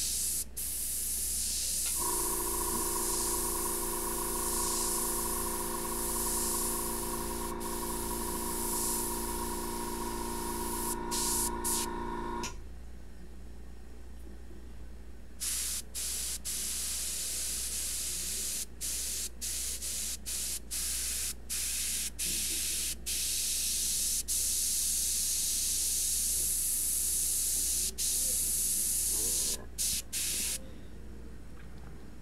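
Airbrush spraying paint with a steady high hiss. The first long spray stops about 12 seconds in, and after a pause of about three seconds the spraying comes in many short stretches broken by brief stops as the trigger is let off and pressed again. A steady hum of several pitches sounds under the first spray from about 2 seconds in.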